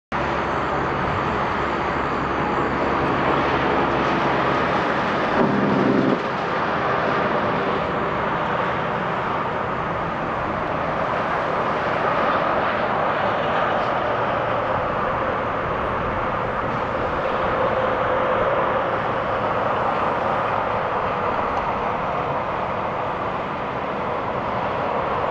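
Car driving on a paved training pad: steady engine and tyre noise with an even hiss. A low engine hum sits under it for the first six seconds and stops suddenly.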